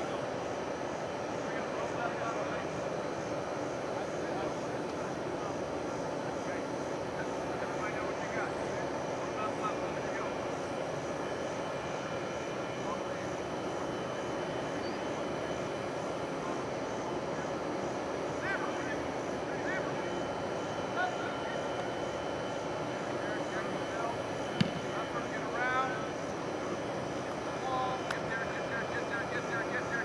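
Distant voices and calls of football players and coaches on an open field over a steady low outdoor drone, with one sharp knock about three-quarters of the way through.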